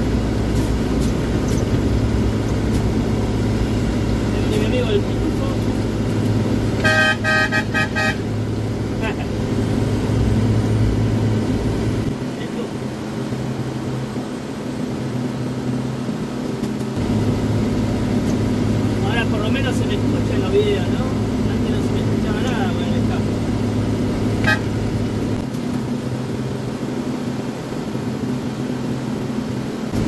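Mercedes-Benz truck's diesel engine running steadily under way, heard from inside the cab of a loaded truck, with a vehicle horn sounding once for about a second, seven seconds in. The deep low part of the engine note drops away for a few seconds after about twelve seconds and again near the end.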